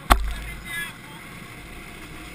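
A single sharp knock just after the start, with a low rumble dying away over about half a second, then steady wind and rolling noise with a brief faint voice.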